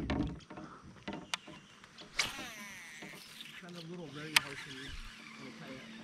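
Quiet handling noise in a fishing kayak: a soft knock at the start, then scattered light clicks with one sharp click a little past four seconds. A distant voice speaks briefly in the middle.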